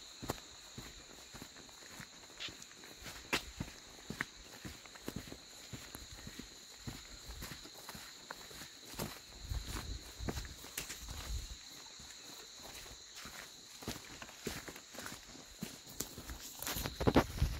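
Footsteps of several people walking on a dirt road, a string of irregular short crunching steps. A steady high-pitched insect drone runs behind them.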